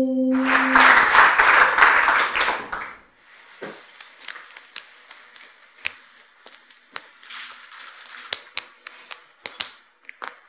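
Audience applause that fades out over about the first three seconds. It is followed by soft, irregular slaps of juggling balls being caught in the hands, a few a second.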